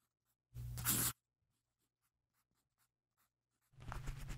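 A single scratchy stroke of a pen on paper, lasting about half a second and starting about half a second in. Music begins just before the end.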